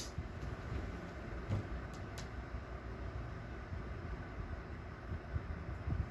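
Steady low background hum of a small room, with a few faint light clicks about one and a half to two seconds in.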